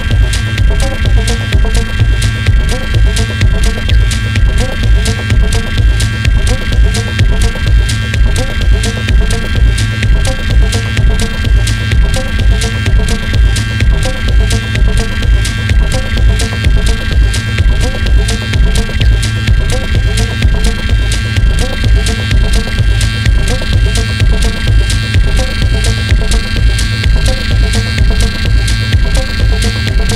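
Industrial techno track: a steady, evenly pulsing kick drum under a sustained droning synthesizer tone, with a quick rhythmic pattern of short blips in the middle register.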